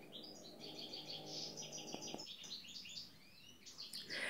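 A bird chirping a long run of quick, short, high notes, faint and in the background. A faint low hum stops a little over halfway through.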